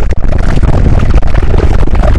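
Very loud, distorted burst of harsh noise with a heavy low rumble, clipping at full volume.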